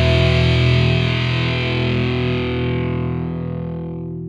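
Hard rock song ending on one held, distorted electric guitar chord that rings out and slowly fades, its treble dying away first.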